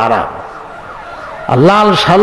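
A man preaching in Bengali through a microphone and loudspeaker, his voice drawn out in a sweeping, sing-song rise and fall. It pauses for about a second, when only a fainter trailing echo is left, then comes back strongly.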